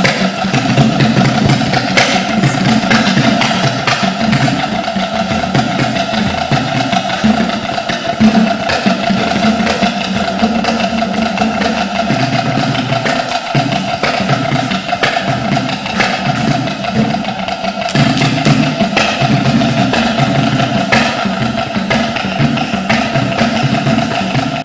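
Loud dance music driven by drums and wooden knocking percussion, with a steady, busy rhythm.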